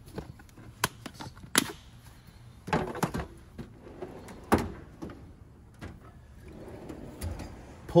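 Plastic tool case and tool box drawers being handled: several sharp knocks and clunks in the first five seconds, then a longer rolling rattle near the end as a Snap-on Master Series tool box drawer slides open.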